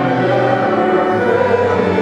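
Congregation singing a hymn with church organ accompaniment.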